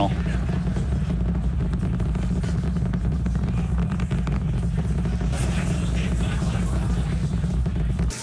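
Starship's Super Heavy booster and its Raptor engines firing during ascent: a steady, deep rumble with dense crackle, heard through the launch webcast.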